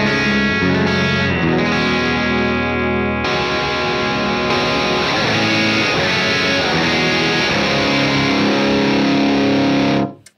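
Six-string electric guitar played through a Matthews Effects Architect boost/overdrive pedal into a Tone King Sky King combo amp, with driven, sustained chords. The tone changes about three seconds in.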